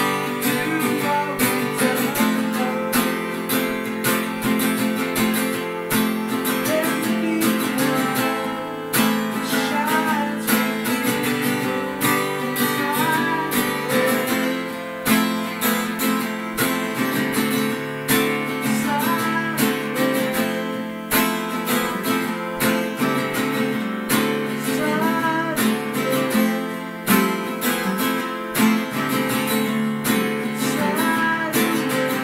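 Acoustic guitar strummed and picked in a steady rhythm, playing a full song accompaniment.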